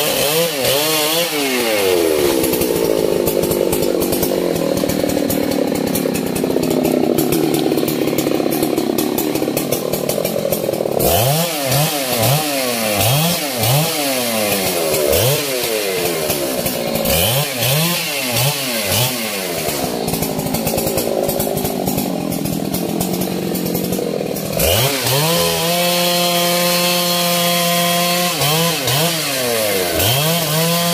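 Husqvarna 3120 XP two-stroke chainsaw cutting into a large tree trunk. Its engine note drops and thickens under load during the cuts. Between cuts it is revved up and down several times, and near the end it is held at steady high revs, dipping briefly before climbing again.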